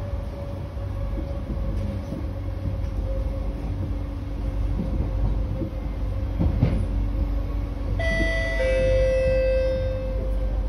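C151B metro car running at speed: a steady low rumble with a held whining tone. About eight seconds in, a chime of several clear tones sounds over it, the train's public-address chime ahead of a station announcement.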